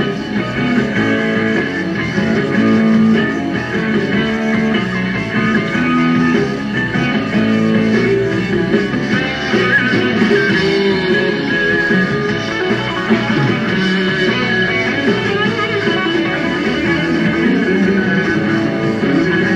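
Live rock band playing an instrumental break between verses, with guitar to the fore and notes bent near the middle.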